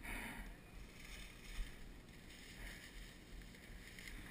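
Faint outdoor ambience with a low steady rumble and one light click about one and a half seconds in.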